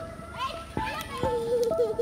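Voices over music: several plucked notes that ring on as steady tones, with a wavering voice in the second half.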